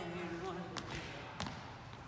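Sneakered footwork of a Lindy Hop swing-out on a wooden floor: two sharp foot strikes, one before and one after the middle, over a voice sounding out the rhythm in the first half.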